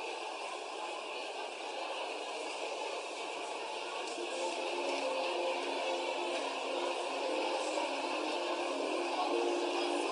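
Steady murmur of a church congregation in a hall, with soft sustained musical notes coming in about four seconds in.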